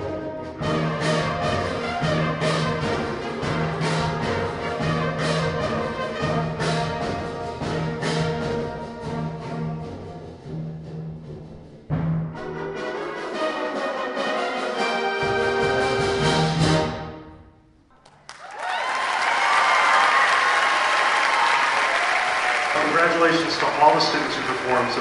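High school symphonic band of brass, woodwinds and percussion playing the closing bars of a holiday arrangement. A low bass figure pulses steadily, then a sharp accented entry about halfway builds to a final held chord that stops sharply. After a brief silence the audience applauds.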